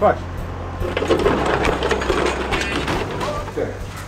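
A wooden shipping crate on a pallet scraping and rattling over rough pavement as it is pushed, a steady grinding clatter for about two seconds, over a low hum.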